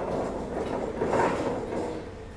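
Rattling and scraping of metal as a forklift moves a welded steel arched frame. The noise starts suddenly and is loudest about a second in.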